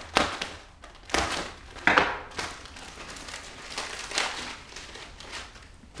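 Plastic wrapping and cardboard trays of marshmallow Peeps being crinkled and crushed by hand in irregular bursts, loudest near the start and just before two seconds in.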